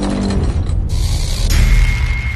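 Intro sting: theme music layered with mechanical, ratchet-like sound effects. A new layer comes in about a second in, and a steady high tone joins about halfway through.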